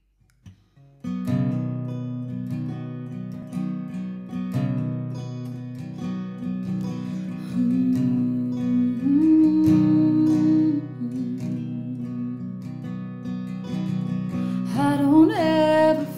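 Acoustic guitar playing the intro of a country song. It comes in about a second in, after a few soft clicks, and a woman's singing voice joins near the end.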